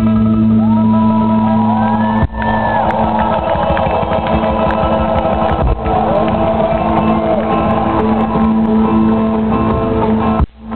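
A live band playing a fast rumba with strummed guitars and a steady bass at full volume, heard from within the audience, with voices shouting and singing along over it.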